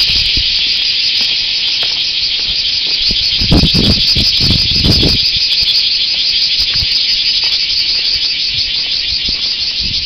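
Loud, steady chorus of insects, a dense fast-pulsing trill, filling the air without a break. A few low rumbling bumps come through in the middle.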